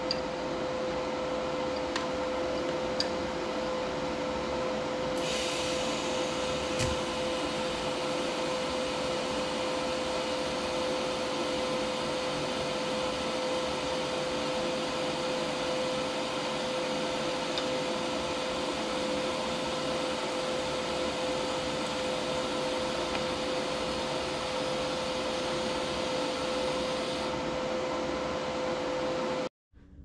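Electric welding arc hissing steadily as tabs are welded onto a thick steel frame rail, starting about five seconds in and stopping a few seconds before the end. Under it a steady machine hum with one constant tone runs throughout.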